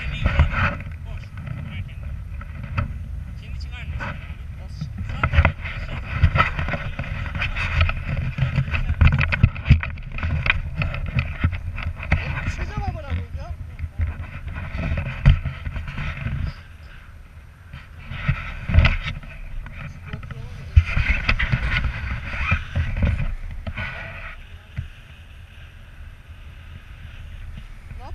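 Wind rushing and buffeting over an action camera's microphone on a tandem paraglider in flight, with a person's voice heard over it at times.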